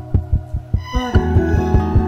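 Heartbeat-like low thumping pulse in a neotango track, quick and even. Sustained instrumental tones come back in about halfway through, with a brief falling glide.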